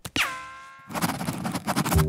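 Cartoon sound effect: a sharp boing that drops quickly in pitch and rings out, fading within about a second, followed by a quick run of fast rattling clicks.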